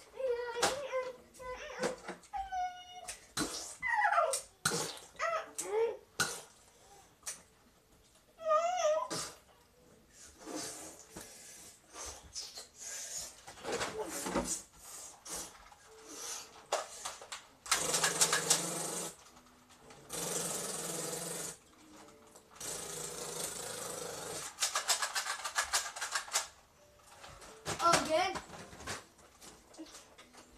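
A boy's voice making short wordless yells and vocal noises in bursts. Past the middle come two bursts of hissing noise, each a second or two long, followed by a stretch of rapid crackly clicking.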